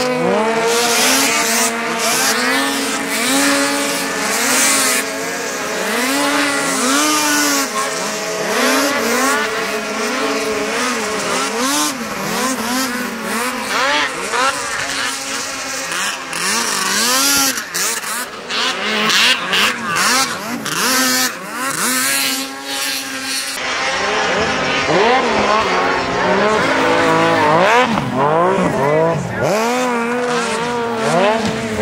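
Several racing snowmobile engines revving hard, their pitch swooping up and down over and over as the sleds accelerate and back off through the jumps, with more than one engine heard at a time.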